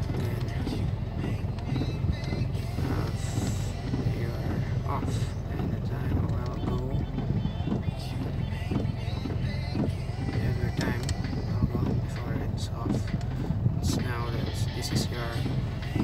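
Music with vocals playing from a car stereo inside the cabin, over a steady low rumble from the vehicle.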